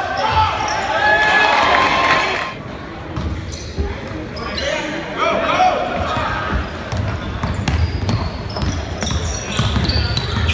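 Basketball game in a gym: the ball bouncing on the hardwood floor as it is dribbled, with voices calling out, loudest for the first couple of seconds, all echoing in the large hall.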